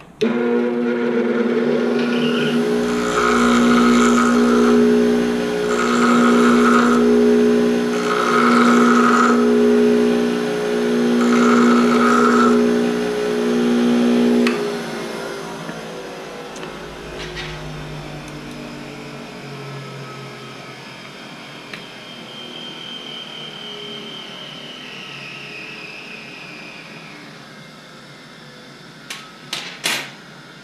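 A 6-inch bench grinder switched on and running with a steady hum, while the end of a motorcycle fork compression-valve rod is pressed to the wheel four times, each grind lasting about a second and a half. It is grinding off the end so that the nut holding the shim stack can come off. The grinder is switched off about 15 seconds in and spins down with a falling whine.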